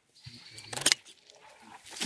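Scissors snipping a green pepper off its vine: a single sharp clip about a second in, after some light handling noise.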